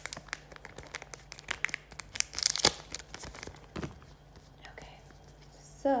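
A paper packet of under-eye pads being crinkled and torn open. Quick crackling rustles build to a loud tear about two and a half seconds in, followed by softer rustling as the pads are taken out.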